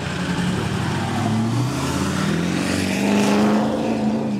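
Modified diesel Ford F-250 pickup accelerating hard, its engine pitch climbing over the first two seconds and then holding. The engine is tuned to over-fuel and 'roll coal', blowing black smoke as it pulls.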